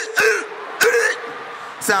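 Two short, pitched male vocal calls about half a second apart: the fraternity call of Omega Psi Phi members (the Ques) answering a shout-out to them.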